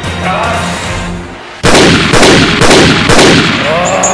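Film soundtrack music, then about a second and a half in a run of four or five loud gunshot blasts, about two a second, each ringing out over the music.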